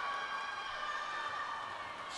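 Steady background noise of an indoor swim meet, a spread-out hiss with several faint, unchanging high tones running through it.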